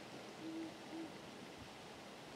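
Faint owl hooting: two short, low hoots about half a second apart.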